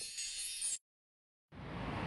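The fading tail of a sparkle or twinkle sound effect, a high shimmer that dies away within the first second. It is followed by dead silence at an edit and then faint background noise rising near the end.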